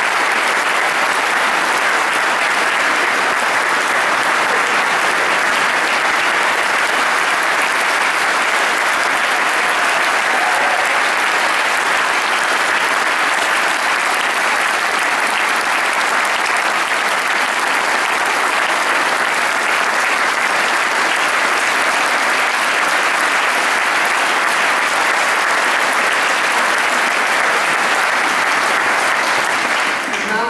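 Large audience applauding steadily: a long, unbroken standing ovation of many hands clapping.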